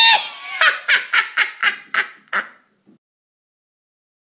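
A high-pitched, wavering shriek that breaks into a cackling laugh of about seven short bursts, fading out within three seconds. It starts and stops abruptly out of silence.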